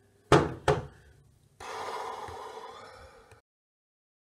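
Two sharp knocks about half a second apart, followed about a second later by a rushing noise lasting nearly two seconds that stops abruptly.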